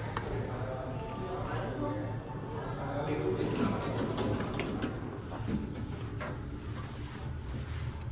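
Indistinct voices of people talking close by, over a steady low hum, with a few light clicks.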